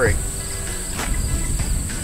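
Steady high chirring of crickets, with a low rumble underneath and a single click about a second in.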